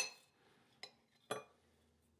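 Knife clinking against a plate while slicing a shortcake biscuit: a sharp ringing clink at the start, then two lighter clinks about a second in and a little after.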